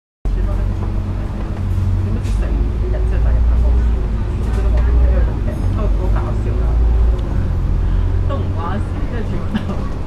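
Cabin sound of a moving KMB ASU-class double-decker bus: deep engine and drivetrain rumble with a steady whine, and passengers' voices over it.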